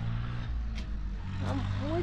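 An engine running steadily at idle with a low, even hum. A voice begins near the end.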